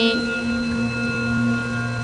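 Steady backing-music drone of a few sustained, unwavering tones between chanted mantra lines, with a lower note joining a little under a second in.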